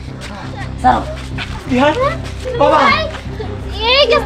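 Speech only: several short bursts of raised voices calling out, over a steady low hum.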